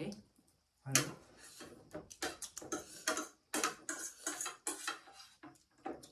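Eating at the table: forks clinking and scraping on plates, along with chewing, in a quick irregular run of short clicks from about a second in.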